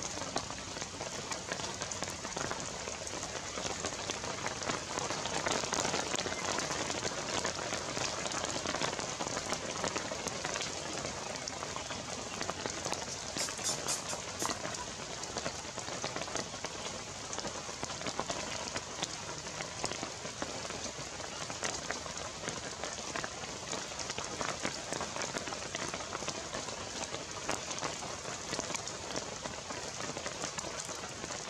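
Steady rain falling, a dense even hiss of drops.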